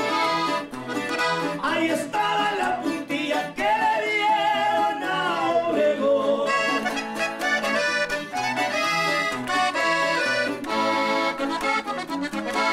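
Norteño group playing a corrido live: men's voices singing in Spanish over button accordion and bajo sexto, with a steady bass-strum beat. The singing is most prominent in the first half; the accordion carries the second half.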